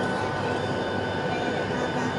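Cabin noise inside a Boeing 757-200 heard from an exit-row seat: a steady rumble of the jet engines and airframe with a faint steady whine, as the airliner rolls along the ground.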